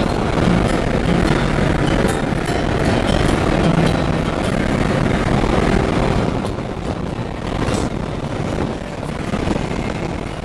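Porsche Cayman heard from on board at speed on a racetrack: engine running hard under a thick layer of wind and road noise. The overall sound drops a little about six and a half seconds in.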